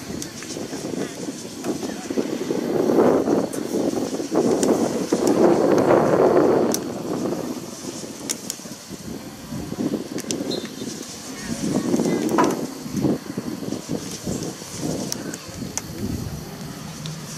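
Indistinct voices of players and spectators carrying across an open soccer field, with no clear words. The sound swells twice, once in the first half and once near three-quarters through.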